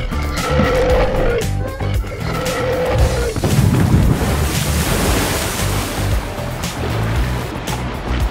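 Animated-film score with held notes over a pulsing low beat. About three seconds in, a loud rush of churning water swells up and fades over a few seconds as the giant sea turtle dives under the surface.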